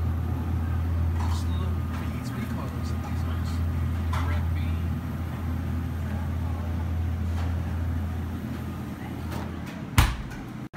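Steady low hum of a refrigerated display case's compressor and fans, with faint voices in the background.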